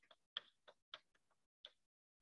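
Chalk tapping on a blackboard while an equation is written: about half a dozen faint, short, irregular clicks.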